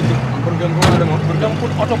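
Jeep engine running with a steady low hum, heard from the back of the vehicle, with one sharp knock a little under a second in.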